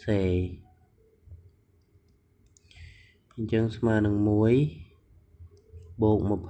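Brief speech at the start and a drawn-out spoken word about halfway through, with light clicks of a stylus tapping on a tablet screen while writing in between.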